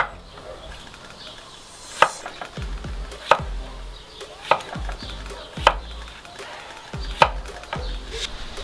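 Broad-bladed kitchen knife chopping zucchini into cubes on a wooden cutting board: about six separate strikes of the blade through the flesh onto the board, roughly one every second and a quarter.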